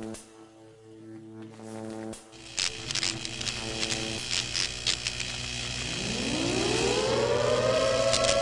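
Cinematic logo-intro sound design: a low droning hum with glitchy static crackles, then a rising swell about six seconds in that sweeps up in pitch and levels off into a held tone.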